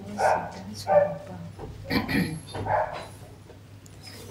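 A dog barking: four short barks spread across a few seconds.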